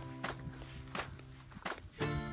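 Background music with long held chords, the chord changing near the end, over a few sharp slaps of sandal footsteps on a grassy path.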